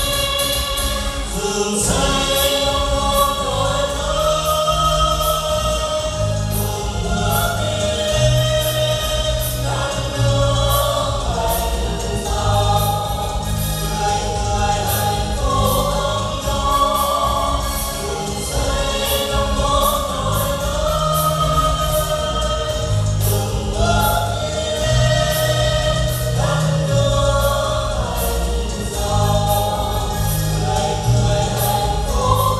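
A mixed group of men and women singing together into microphones over amplified music with a steady beat and bass line.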